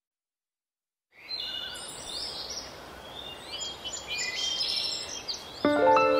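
Silence, then from about a second in many birds chirping over a steady background hiss, as in a nature-ambience track. Music with sustained notes comes in just before the end.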